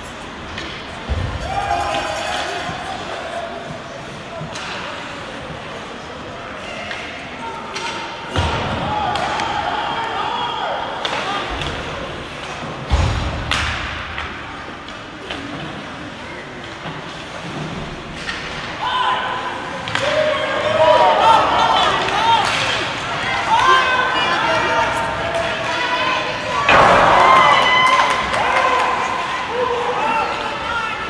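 Ice hockey game in a rink: spectators' voices and shouts, rising in the second half, with about five heavy thuds against the rink boards, one about 13 seconds in standing out.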